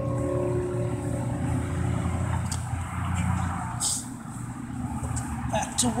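Cigar box guitar notes ringing on and dying away over the first two or three seconds, over a steady low engine rumble. Near the end there are a few small clicks.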